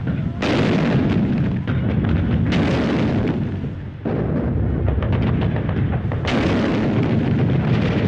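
Battle sound of artillery explosions and gunfire: a continuous deep rumble broken by three sudden loud blasts, one just after the start, one about two and a half seconds in and one past six seconds, each dying away.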